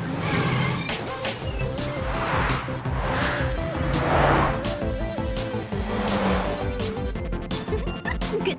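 Upbeat cartoon background music mixed with animated vehicle sound effects: engines running and about four swelling rushes of noise as racing vehicles go past.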